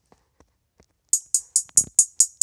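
Sampled trap hi-hat from the Caustic 3 drum-machine app, coming in about a second in and repeating evenly at about four crisp hits a second, with a single low thump under one of the hits.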